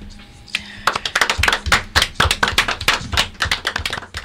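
A rapid, slightly uneven run of sharp taps or claps, about six a second, starting about a second in after a quiet moment.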